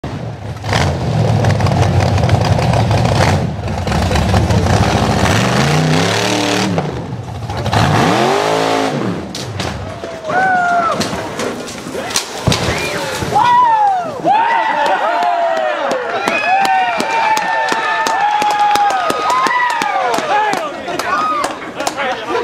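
Off-road buggy's engine revving hard on a steep rock climb, its pitch swinging up and down. About twelve seconds in there are sharp knocks as the buggy flips over backwards. Then a crowd of onlookers shouts and yells.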